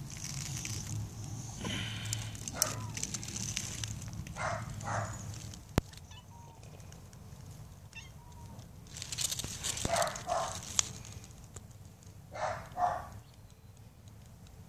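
A hungry domestic cat meowing in short double calls, three times.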